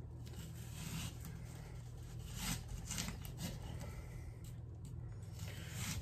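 Knife slicing down through a raw yellow onion on a wooden cutting board: several faint crunching cuts and scrapes of the blade, over a steady low hum.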